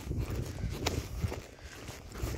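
Footsteps of a person walking quickly over a dirt and scrub trail: an irregular run of soft thuds with a few sharper scuffs.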